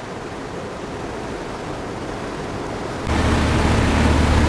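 Steady rush of wind and moving water heard from the deck of a river cruise boat under way. About three seconds in it jumps louder, with a deep steady rumble joining the hiss.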